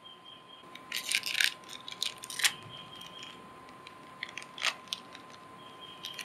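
Small wet-wipe packet wrapper crinkling as it is handled, in short crackly spells about a second in, around two and a half seconds, and again near five seconds.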